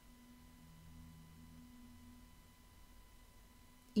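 A faint, steady low hum of a few held tones, with a thin high whine beneath it.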